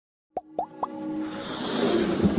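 Three quick pops, each rising in pitch, about a quarter second apart, followed by a swelling whoosh over a held music tone. It is the sound design of an animated logo intro.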